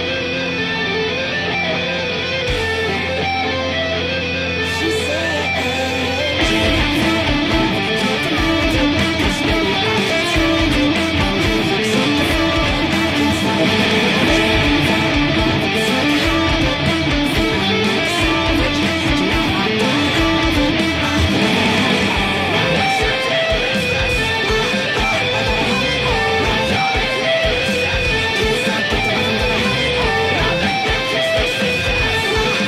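Electric guitar playing fast-moving lines along with a full rock band recording. About six seconds in, the drums and the rest of the band come in and the music gets louder.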